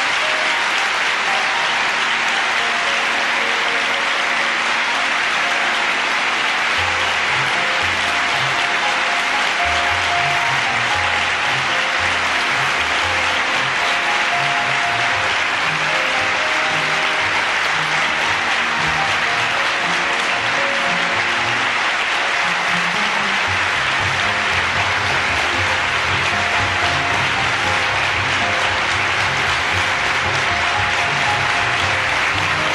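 A large audience in a hall applauding steadily and at length. Music plays underneath, with a bass line coming in about seven seconds in.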